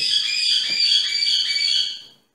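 A steady high-pitched whine made of several held tones at once, one of them pulsing slightly, cutting off suddenly at the end.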